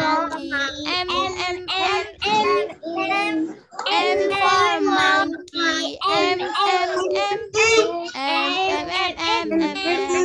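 Children's voices singing and chanting through the alphabet, letter by letter, without a break.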